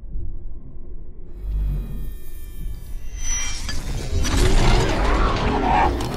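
Intro sound design for an animated logo. A deep rumble builds, then about halfway through it swells into a louder noisy surge with sharp cracks, peaking near the end.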